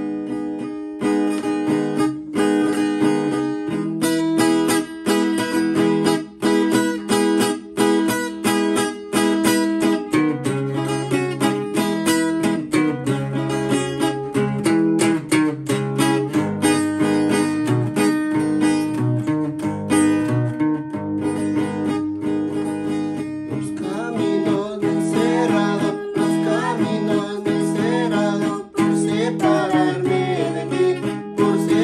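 Steel-string acoustic guitar strummed in a steady, brisk rhythm: the instrumental introduction of a carnavalito. Voices come in singing near the end.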